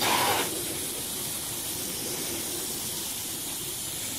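Garden hose spraying a jet of water onto glass-faced solar panels: a steady hiss of spray, louder for the first half second.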